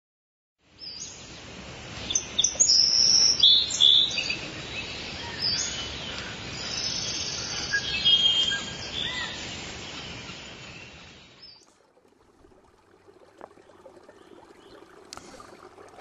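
Birds chirping and singing over a steady background hiss, stopping abruptly about eleven seconds in. Faint outdoor background noise follows.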